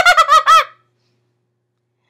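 High-pitched giggling in a put-on childlike voice, a quick run of about seven short laughs that stops within the first second, followed by dead silence.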